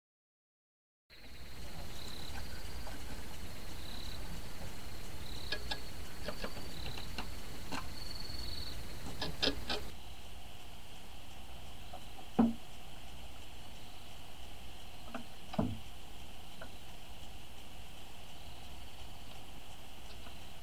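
Quiet night-time ambience with a steady low hum and faint, broken high-pitched chirping. Light clicks and taps come in a cluster in the middle, then two single ticks follow later on.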